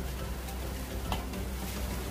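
Silicone spatula stirring a thick condensed-milk and cocoa mixture in a pot, with a few faint soft ticks of the spatula against the pot.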